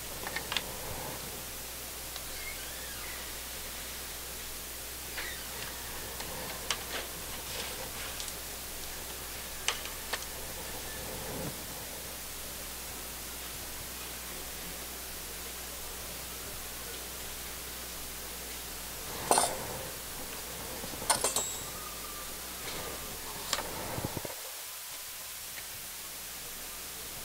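Steady background hiss with scattered small clicks and clinks of fine metal tools, such as tweezers, being handled at a microsoldering bench. The loudest clicks come in two clusters about two-thirds of the way through.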